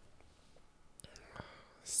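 Quiet room for about a second. Then a couple of faint clicks and a man's soft, breathy murmur, running into speech at the very end.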